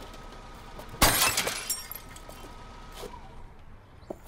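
Glass being smashed in a Zastava car: one loud crash about a second in, with shards crackling for a moment afterwards, and a fainter knock near the end.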